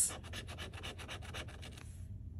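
Metal bottle opener scratching the coating off a scratch-off lottery ticket in quick, rapid strokes that stop just before the end.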